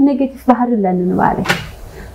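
A person talking.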